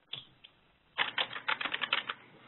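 Computer keyboard typing: a single keystroke near the start and another shortly after, then a quick run of about ten keystrokes in the second half. It is heard through a narrow telephone-bandwidth conference line.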